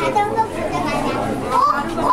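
Children's voices and chatter, with no single clear speaker.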